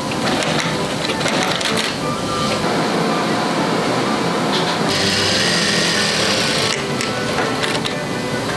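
Industrial lockstitch sewing machines stitching coat fabric in short runs that start and stop. The longest and loudest run comes about five seconds in and lasts nearly two seconds.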